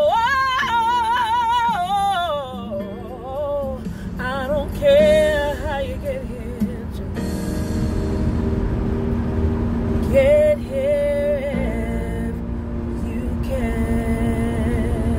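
A woman singing a slow ballad with wide vibrato: a long held note at the start, then short phrases about 4 and 10 seconds in, over steady held backing chords. A low road rumble from inside a moving car runs underneath.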